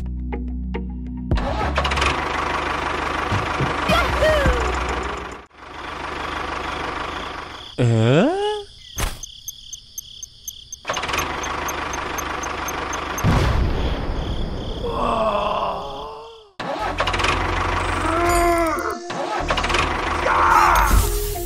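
Sound effects over background music: an engine running in stretches, and cartoon-style gliding tones that swoop down and back up, one about eight seconds in and warbling ones later on.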